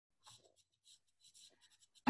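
Near silence, with a few very faint, brief sounds.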